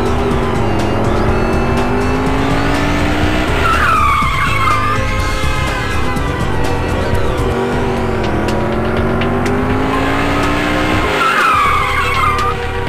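Soundtrack music mixed with racing sound effects: an engine revving up over about three seconds, then a tyre screech, the same pair repeating about seven and a half seconds later.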